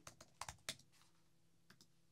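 Faint computer keyboard keystrokes, about four short clicks in the first second, followed by one soft click near the end.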